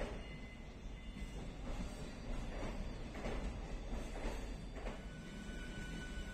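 A train running past close alongside a platform: a steady low rumble with a rush of wheel clatter coming back about once a second.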